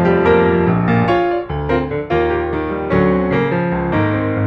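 Piano music: a keyboard melody played over sustained chords, with new notes struck every half second or so.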